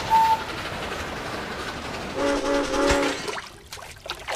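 Model train running on its layout, with a short high whistle at the start and three short horn blasts a little after two seconds in.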